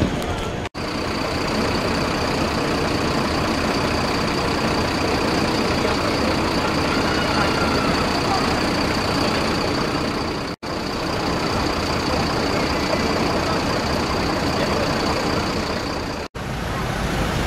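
Outdoor ambience of vehicles and people talking in the background, a steady noisy wash that cuts out briefly twice.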